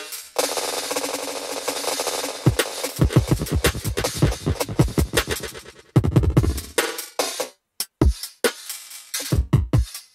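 Drum-and-bass drum loop at 140 BPM playing through Bitwig's Delay+ echo while its delay time is swept in crossfade mode, so the repeats shift in timing without a change of pitch. A dense wash of echoes in the first few seconds gives way to quick, stuttering repeated hits, with a short dropout near the end.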